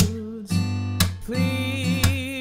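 Fingerpicked steel-string acoustic guitar playing a Dm7 chord, then G7 about a second in. Each chord is struck sharply and then rings. A held melody line wavers slowly in pitch over the chords.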